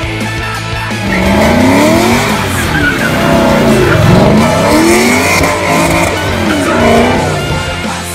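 2006 Mustang GT's V8 revving up and down while the rear tyres squeal through a smoky burnout donut, about a second in until near the end, over rock music.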